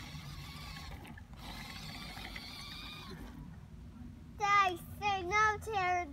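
Faint, steady whine of a toy remote-control car's small electric motor for about three seconds, then it stops. Near the end a high-pitched voice calls out loudly.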